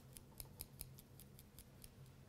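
Faint rapid ticking, about five light clicks a second, of a paintbrush stirring paint in the small metal cup of an Iwata Custom Micron C airbrush.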